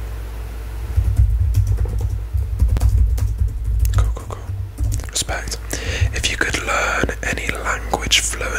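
Soft close-up whispering from about halfway on, with scattered sharp clicks throughout. A low rumble on the microphone is the loudest thing, in the first half.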